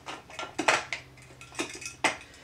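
A string of sharp plastic clicks and taps from handling a clogged liquid glue bottle that won't dispense.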